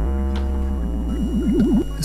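Roland monophonic analog synthesizer playing a held low note under a tone that swings quickly up and down in pitch, about seven times a second, the notes changing just under a second in.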